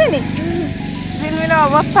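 Petrol lawn mower running steadily, a low even hum under a small child's high-pitched voice.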